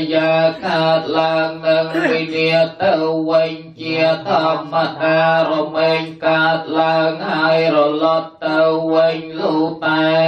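Buddhist chanting of Pali verses in a steady monotone, held on nearly one pitch, with short breaks for breath about three and eight seconds in.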